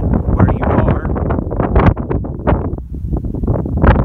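Wind buffeting the microphone: a loud, gusting rumble that keeps rising and falling.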